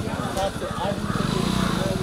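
Several people talking in the background, with a small engine running under the voices. The engine swells louder from about a second in.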